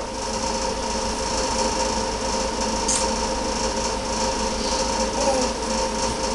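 A steady mechanical hum with several fixed tones over a background hiss, and a faint click about three seconds in.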